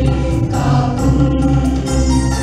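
A choir singing a Malayalam devotional theme song in unison over instrumental accompaniment with sustained bass notes.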